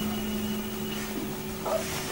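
A steady low hum of two held tones over faint hiss, the lower tone stopping about a second in.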